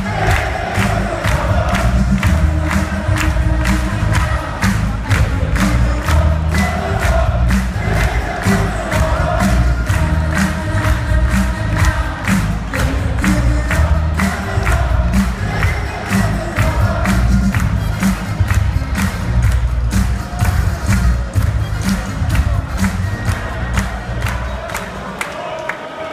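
Darts walk-on music with a steady pounding beat played loud over the arena PA, with a large crowd cheering and chanting along. The music drops away near the end.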